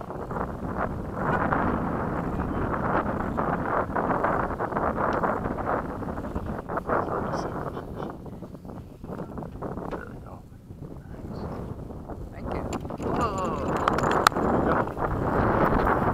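Wind buffeting the microphone, a gusty rumble that eases off around the middle and builds again near the end.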